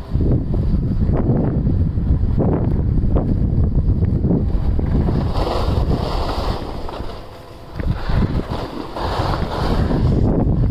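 Wind buffeting the microphone while sliding fast down a groomed ski slope, with the hiss and scrape of edges on snow swelling about halfway through and again near the end. It drops briefly quieter shortly after the middle.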